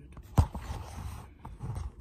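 A single sharp bang about half a second in, sudden enough to startle, followed by rubbing and bumping from the phone being handled close to its microphone.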